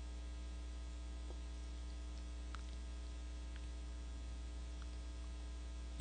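Faint, steady electrical mains hum, a low buzz with many overtones, with a few soft ticks now and then.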